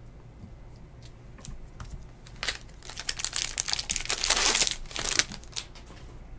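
Trading-card pack's foil wrapper crinkling and tearing as it is ripped open. The crackle builds about two and a half seconds in and stops just after five seconds, after a few light handling clicks.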